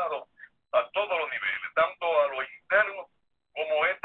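Speech: a voice talking in quick phrases, sounding thin and narrow like a voice over a telephone line.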